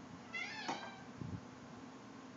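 Short high squeak with a wavering pitch from a cartoon soundtrack played on a TV, as a cartoon baby takes his bottle from his mouth. A soft low knock follows about a second later as the bottle is set down on the counter.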